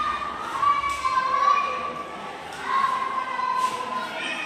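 Children's voices shouting and calling, in long drawn-out tones, in two bouts about a second apart.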